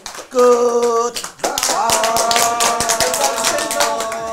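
Singing in long held notes, one short and one longer, with hand clapping keeping time throughout.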